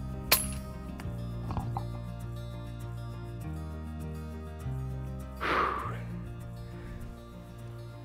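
Background music with steady bass chords, broken just after the start by one sharp crack from a single shot of an FX Impact .30 calibre PCP air rifle. A short rushing noise follows a little past halfway.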